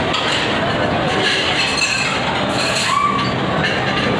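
Busy restaurant dining room: many people talking at once, with dishes, cutlery and glasses clinking now and then.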